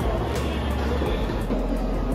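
Steady low rumble of a railway station as trains run, with background music over it.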